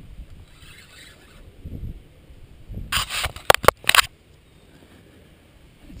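Handling noise on the camera: a hand rubbing and scraping against the camera housing in a cluster of loud, sharp scrapes about three to four seconds in, over a low rumble.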